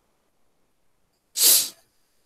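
A single short, loud burst of breath noise close to a microphone, about one and a half seconds in, lasting under half a second.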